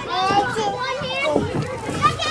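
A young child's high-pitched voice, babbling and calling out in short wordless bursts inside a plastic tube slide.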